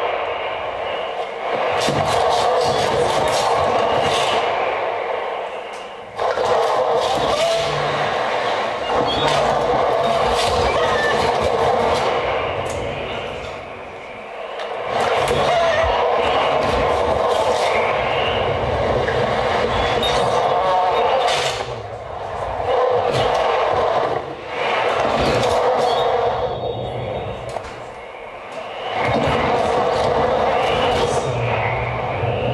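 Live experimental noise music from laptop electronics: a dense, grainy wash of noise, strongest in the middle range, with scattered clicks. It eases off and swells back several times, cutting back in suddenly about six seconds in.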